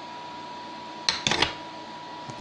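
A cast Rose's metal (bismuth-lead-tin alloy) ingot bar set down on a tile surface: a short clatter of a few sharp knocks about a second in.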